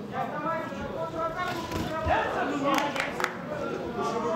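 Voices calling out around a boxing ring during a live bout, fainter than a close commentator, with a few sharp knocks about three seconds in.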